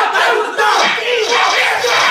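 A small group of people shouting and cheering together, loud and unbroken.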